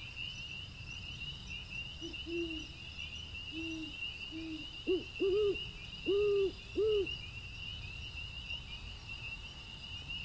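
An owl hooting, a run of about eight low hoots between about two and seven seconds in, the last four louder, over a steady chorus of crickets chirping.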